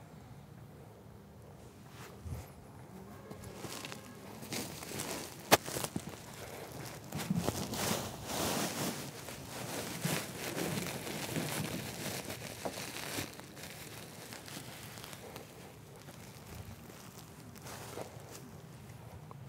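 Rustling and crinkling handling noise, with one sharp click about five and a half seconds in; it is busiest through the middle and dies down towards the end.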